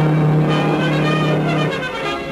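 A ship's steam whistle sounding one long, steady low blast that cuts off near the end, over orchestral music with brass.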